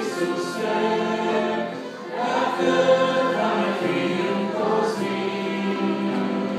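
Congregation singing a worship song together, a man's voice on a microphone leading. The singing dips briefly about two seconds in, then swells again.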